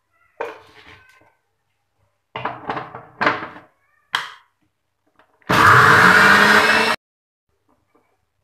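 Electric mixer grinder run in one short burst of about a second and a half, its motor pitch rising as it spins up, then switched off abruptly, grinding spinach with water into a puree.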